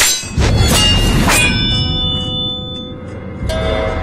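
Metallic clangs of a staged fight: a quick run of strikes in the first second and a half, the last left ringing as a steady metallic tone, then another strike near the end.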